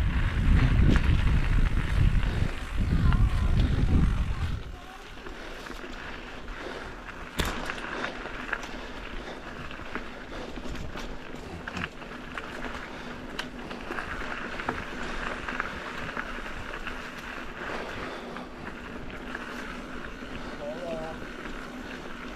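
Mountain bike rolling along a dirt singletrack: wind buffets the microphone for the first four seconds or so, then tyres crunch over the dirt with rattles from the bike and a sharp click about seven seconds in.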